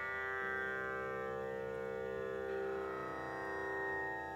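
A tanpura drone: a steady chord of many held tones sounding evenly without a break, with no plucked melody or drumming over it.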